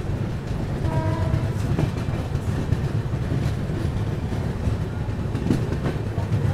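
Passenger train rolling slowly into a station: a steady low rumble from the wheels and running gear, with scattered clicks over the rail joints. A brief tone sounds about a second in.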